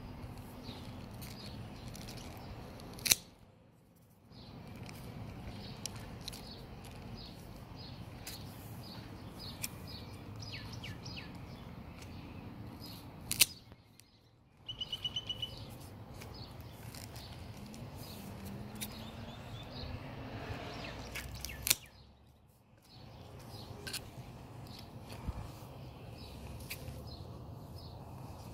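Small scissors snipping echeveria pups off at the stem, with birds chirping and a steady outdoor hum behind. Three sharp clicks, about ten seconds apart, stand out as the loudest sounds, each followed by about a second of near silence.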